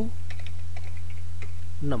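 Computer keyboard typing: a handful of light key clicks as a word is backspaced and retyped, over a steady low hum.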